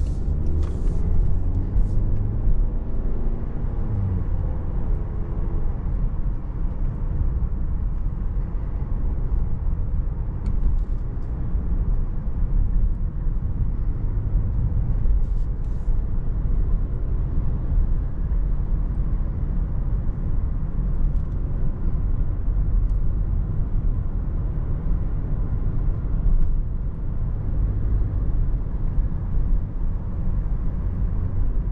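Cabin sound of a Range Rover Evoque with a 2.0-litre four-cylinder petrol engine and 9-speed automatic. In the first few seconds the engine note rises as the car picks up speed from a slow pull-away, then it settles into a steady low rumble of engine and road noise while cruising.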